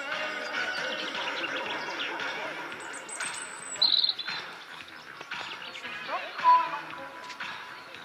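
Indistinct background voices mixed with music, with a brief high chirp about four seconds in and a short whistle-like tone a little over six seconds in.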